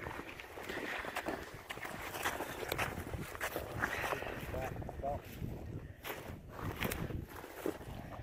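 Irregular scraping and crunching of frozen soil and snow as a buried trap is dug out and pulled by hand, with boots shifting in the snow.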